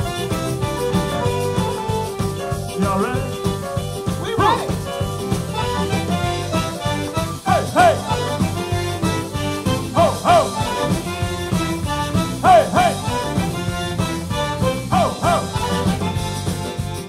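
Live zydeco band playing an instrumental stretch: piano accordion, rubboard, drums, electric bass, guitar and keyboard over a steady driving beat. A short high sliding lick rises and falls about every two and a half seconds, starting about four seconds in.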